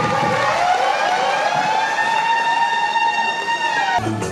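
High-pitched ululation from women in the audience, several overlapping cries at first, then one long held trilling note that bends slightly and cuts off at the end.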